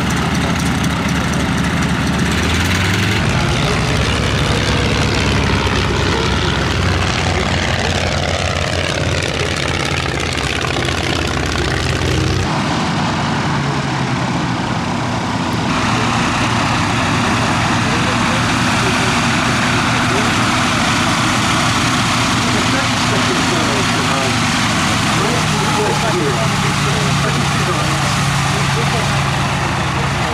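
Fairey Swordfish's Bristol Pegasus nine-cylinder radial engine running at low power as the biplane taxis on grass. The engine note shifts abruptly a few times.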